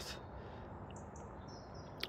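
Steady hum of distant motorway traffic, with a few faint, high bird chirps about a second in and a thin high call near the end.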